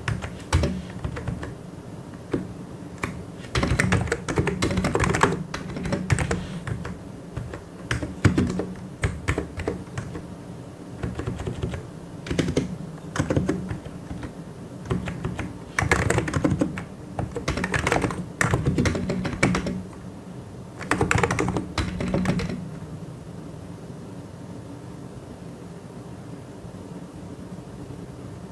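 Mechanical keyboard typing: fast runs of key clicks in bursts of a second or a few seconds, with short pauses between them. The typing stops a few seconds before the end, leaving a faint steady hum.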